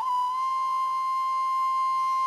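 Background music: a flute holding one long, steady note over a quieter sustained drone.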